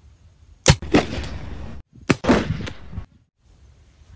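Homemade alcohol-fuelled pistol made from pipe fittings firing twice, about a second and a half apart. Each shot is a sharp crack followed closely by a second crack and a short noisy tail that cuts off abruptly.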